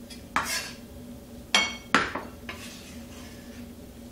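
A ceramic bowl and a kitchen knife knocking and clinking against a wooden cutting board as chopped chillies are moved into the bowl. There are three sharp knocks: one about a third of a second in, then two close together around a second and a half in, the first of these with a short ring.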